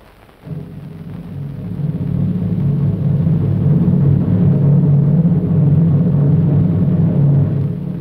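Dramatic film background score: a low, sustained orchestral chord starts about half a second in, swells up over the next few seconds, then holds loud.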